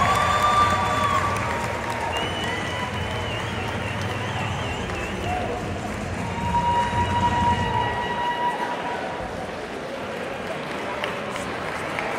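Steady hubbub of a crowd in a large sports hall, with voices and a few drawn-out high calls rising above it.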